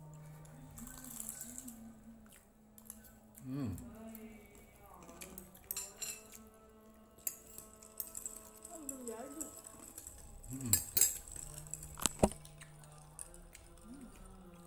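A few sharp clinks of plates and glasses on a dining table, the loudest two about eleven and twelve seconds in, over faint background voices.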